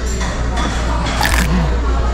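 A single bite into a taco, one short crunch a little over a second in, over restaurant background music and chatter.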